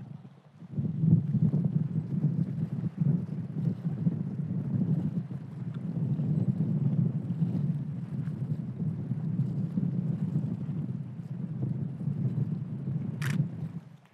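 Wind buffeting the microphone outdoors: a low, gusty rumble that rises and falls.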